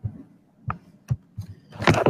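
A few thumps and sharp clicks, then a loud crackling burst of noise near the end, coming over a video call's audio from a caller whose microphone connection is having trouble.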